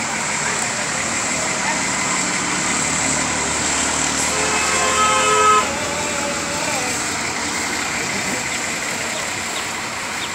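Steady outdoor background noise of passing traffic, with a vehicle horn sounding once for about a second and a half near the middle.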